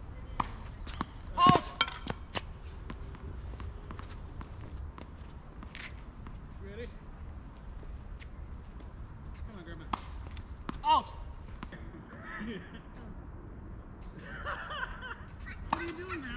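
Doubles tennis rally on a hard court: sharp hits of the ball off rackets and the court, spaced a second or more apart, with two short, louder pitched sounds, one about a second and a half in and one near eleven seconds. A low, steady rumble runs underneath.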